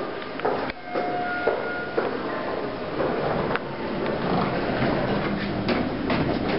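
A sharp click, then a short two-note electronic chime from a Schindler hydraulic elevator, the second note higher than the first. It is followed by a steady rushing noise, most likely the car doors sliding open.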